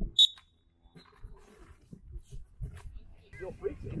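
One short, sharp, high-pitched sound about a quarter second in, as two players start a lacrosse faceoff rep over the ball. Faint scattered sounds follow, with a voice in the last second.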